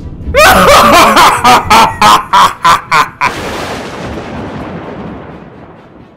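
A man laughing in quick bursts, about four or five a second, for about three seconds. Then a thunderclap sound effect cracks in and rumbles away, fading over the last few seconds.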